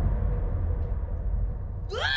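A deep, steady rumble with a faint hum from a film soundtrack, thinning slightly. Near the end a quick rising glide leads into a sudden loud burst.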